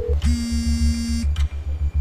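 Phone ringback tone of an outgoing call: a buzzy steady tone lasting about a second, over background music with a steady low beat.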